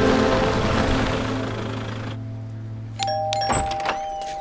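Film score music fading out by about halfway, then a two-note doorbell chime about three seconds in, its tones held and ringing on, with a single thud during the chime.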